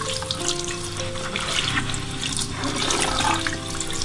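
A thin stream of water pouring into a ceramic bowl of flour-dusted shiitake mushrooms, splashing steadily as the water rises around them.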